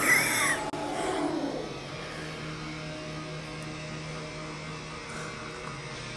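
A short high-pitched cry from a person right at the start, cut off suddenly, then a steady low hum with faint sound from a show playing on a laptop's speakers.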